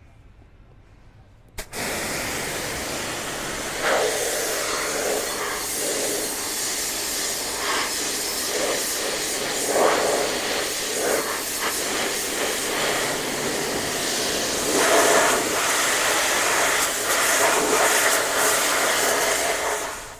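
An electric pressure washer's high-pressure jet comes on suddenly about two seconds in and sprays steadily, a loud hiss with splashing as it hits a barbecue drip tray and the concrete floor, rinsing off degreaser.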